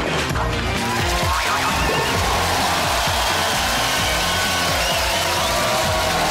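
Upbeat theme music of the opening titles. From about a second in, a studio audience's cheering and applause rises over it.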